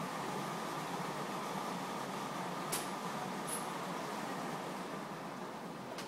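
Steady hum and hiss of a large indoor hall, such as its ventilation, with two sharp clicks about three quarters of a second apart near the middle.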